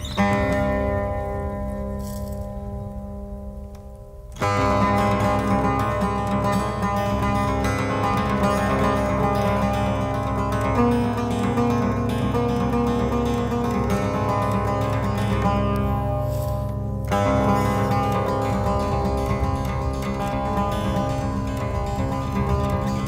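Cretan laouto played solo with a long plectrum. A struck chord rings out and fades over about four seconds. Then fast, dense picking starts abruptly and runs on, thinning briefly near the end before picking up again.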